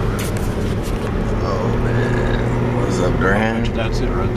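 Inside a moving car: a steady low rumble of engine and road noise, with a few indistinct voices breaking in briefly past the middle.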